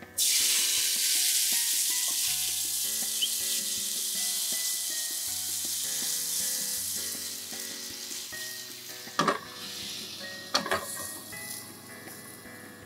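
Water poured into a hot oiled frying pan around frozen gyoza, setting off a loud sizzle that starts suddenly and slowly dies down as the water steams. A couple of sharp knocks near the end.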